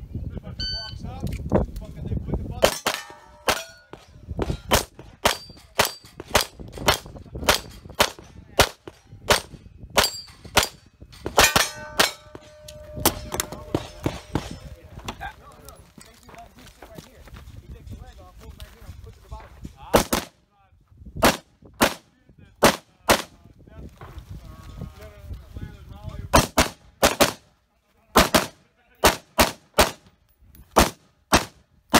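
Competition gunfire: a long string of pistol shots, some followed by the ring of hit steel targets, then quick strings of rifle shots. The shots thin out through a stretch before about two-thirds of the way in, when the shooter moves through the stage and switches guns.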